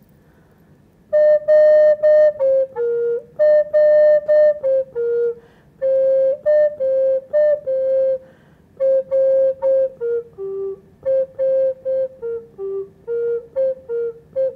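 Wooden Native American-style flute of Purple Heart wood playing an old Paiute song: a slow melody of separate held notes in short phrases, stepping up and down within a narrow range, starting about a second in.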